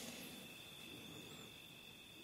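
Faint, steady high trill of crickets over near silence.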